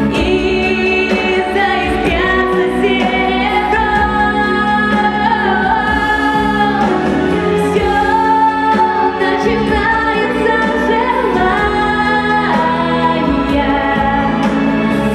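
A female vocalist singing a pop ballad into a handheld microphone over instrumental accompaniment, holding long notes with a slight waver.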